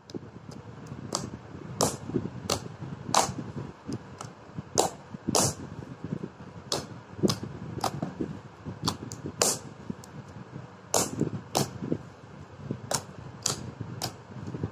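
Glossy slime being kneaded, squeezed and stretched by hand, giving irregular sharp clicks and pops about once or twice a second over a soft squishing.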